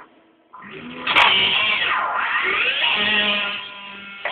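Electric guitar played through effects pedals, making a strange pitch-bending note. After a short quiet start it comes in with a sharp attack just over a second in, then its pitch swoops down and back up before it drops away near the end.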